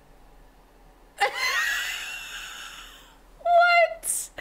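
A woman's delighted, high-pitched breathy squeal starting suddenly about a second in and fading over about two seconds. A short, higher voiced squeal of laughter follows near the end.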